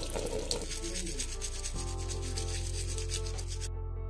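A toothbrush scrubbing: a steady, rough rubbing of bristles that stops abruptly near the end.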